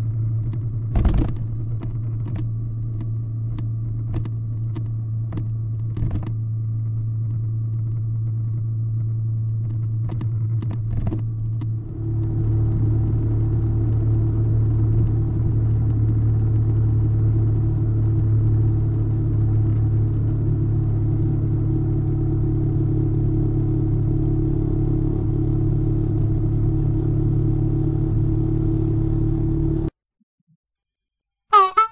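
Honda ST1300 Pan European's V4 engine running at a steady cruise, mixed with wind and road noise as heard from the rider's position, with a few sharp clicks in the first dozen seconds. About twelve seconds in, the sound switches abruptly to a louder, steadier engine-and-wind drone at higher speed.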